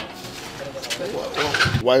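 A man's voice starting to speak near the end, with a bird calling underneath.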